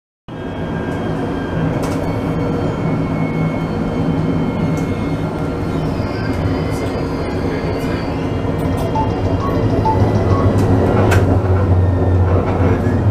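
Tram running along its rails, heard from inside near the front: a steady low hum from the drive, with scattered clicks and rattles. The hum grows stronger in the second half.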